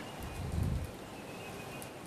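Quiet open-air ambience on a golf course green, with a soft low rumble about half a second in.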